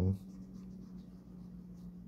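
Felt-tip pen scratching faintly across sketchbook paper in short inking strokes.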